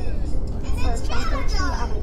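Young children's high-pitched voices without clear words, over the steady low rumble of a car cabin.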